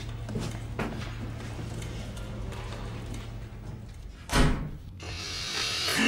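A steady low hum with faint clicks, then a single heavy thud like a door slam about four seconds in. Music comes in near the end and grows louder.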